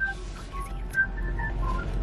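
Soft whistling: a handful of short notes at changing pitches over a low background hum.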